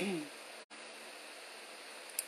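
A short falling vocal sound, like a murmured 'hmm', right at the start, then a faint steady hiss of room tone that cuts out completely for an instant under a second in.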